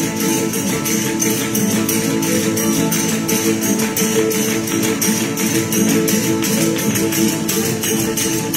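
A panda de verdiales playing traditional Málaga verdiales music: strummed guitars and sustained melody under large tambourines (panderos) shaken and struck in a steady, quick rhythm.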